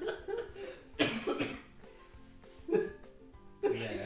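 A man laughing in a few short, breathy bursts, the loudest about a second in.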